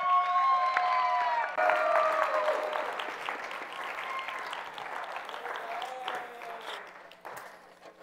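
An audience applauding a speaker's introduction, loudest at first and tapering off until it fades out near the end, with a few long drawn-out cheering calls from the crowd in the first few seconds.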